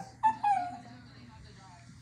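A small dog gives a short high-pitched whine that falls slightly in pitch, about a quarter second in, followed by a much fainter whine.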